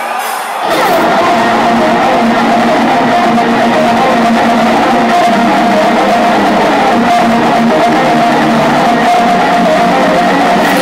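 Heavy metal band starting to play live through an arena PA less than a second in, loud and sustained with held distorted guitar notes, heard from far back in the hall.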